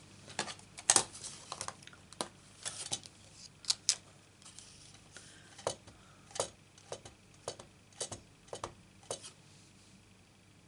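Light clicks and taps of a clear acrylic stamp block and ink pad being handled, then an even run of taps, a little under two a second, as the stamp is tapped onto the ink pad to ink it.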